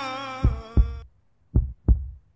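A heartbeat sound effect: paired low thumps in a lub-dub rhythm, twice, about a second apart. Under the first pair, the tail of a held, wavering sung note cuts off about a second in.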